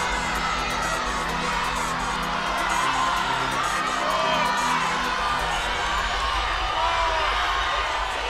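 Background music with held low notes, under a studio audience shouting and cheering with scattered whoops.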